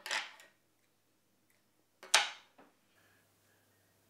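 Two short, sharp handling sounds of fly-tying work, one at the start and a louder one about two seconds later, each fading within half a second.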